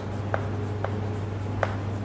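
Chalk writing on a chalkboard: scratchy strokes of the chalk with a few sharp ticks as the letters are formed.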